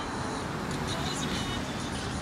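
City street ambience: a steady wash of traffic noise with faint, indistinct voices.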